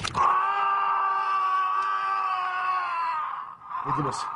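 A person screaming: one long, steady, high-pitched scream of about three seconds that starts abruptly and fades near the end, followed by a shorter cry at the very end.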